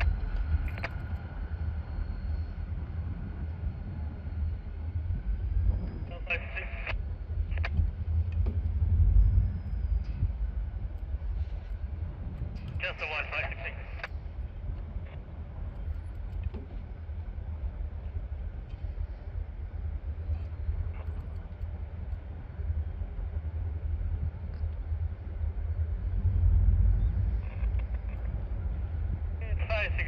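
Steady low outdoor rumble that swells about nine seconds in and again near the end, with a few short voice-like sounds in between.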